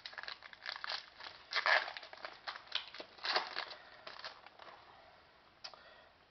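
Trading cards being slid and flipped through by hand: a quick run of short papery rustles and flicks that thins out after about four seconds, with one sharp flick near the end.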